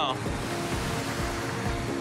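Sea surf breaking and washing in as a steady rush, with soft background music of a few held notes underneath.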